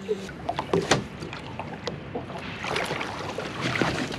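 A sturgeon being hauled out of the river over the side of a metal boat: water splashing, with knocks against the boat's side and a noisy scraping, sloshing stretch in the second half as the fish comes over the gunwale. A short laugh about a second in.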